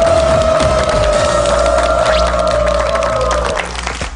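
A quiz-show correct-answer sound effect: one held electronic tone that fades out near the end. Audience applause runs under it as many quick claps.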